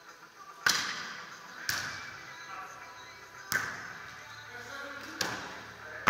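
A beach volleyball being struck four times, sharp slaps about one to two seconds apart: serves and forearm passes in a serve-reception drill. Each hit echoes in the large indoor sand hall.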